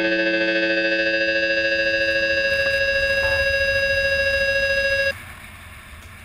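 Soundtrack rock music: a held, distorted electric-guitar chord rings on, then cuts off suddenly about five seconds in, leaving a faint hiss.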